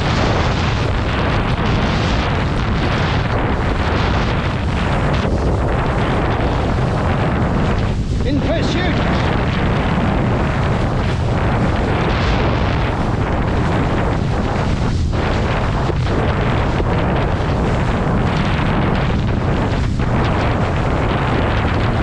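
Wind buffeting the camera's microphone over the rush and splash of a kite surfboard planing across choppy sea water. It holds steady and loud, with only a few brief dips.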